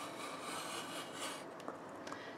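Circle cutter's blade scraping through card as its arm is swung around the centre pivot: a faint, steady rasp, with a couple of small clicks near the end.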